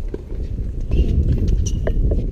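Wind buffeting the camera microphone as a steady rumble, with a couple of sharp knocks from a tennis ball being hit and bouncing on a hard court, one just after the start and one near the end.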